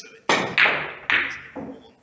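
A pool cue striking the cue ball, then pool balls clacking into each other as they carom across the table: four sharp hits within about a second and a half, each ringing briefly, the last one weaker.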